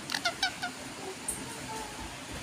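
Indian ringneck parakeet giving a quick run of four or five short, soft, high-pitched chirps near the start.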